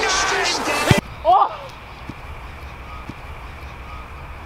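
A dull thud about a second in, then a short yell that rises and falls in pitch; a couple of faint thuds follow.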